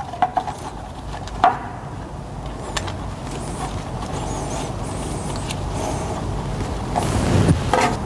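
Hydraulic oil running from the opened drain of a filter housing into a plastic container, a steady hiss that slowly grows louder, with a few light knocks of the gloved hand at the drain plug in the first few seconds.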